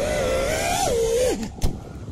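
FPV quadcopter's Axis Flying Black Bird V3 1975kv brushless motors, heard through the onboard camera, whining at a steady pitch that climbs briefly and then drops away as the throttle comes off. A sharp click follows about a second and a half in.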